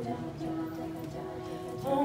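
Women's a cappella group singing sustained wordless backing chords, the held notes stepping to new pitches a couple of times.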